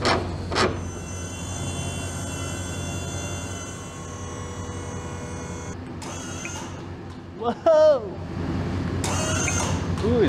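A truck-mounted service crane's motor runs with a steady whine from about a second in and cuts off abruptly a little before halfway, over a constant low hum. Near the end come short, louder sounds with sliding pitch.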